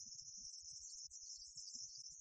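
Crickets chirping: a steady high-pitched trill, with faint low crackle underneath.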